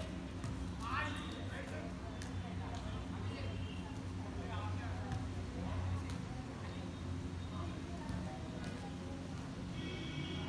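Outdoor volleyball play: players' shouted calls, with sharp slaps of hands hitting the ball now and then, over a steady low background rumble.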